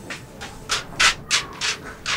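Footsteps scuffing on dry, sandy dirt ground, a string of short scrapes at about three steps a second, beginning just under a second in.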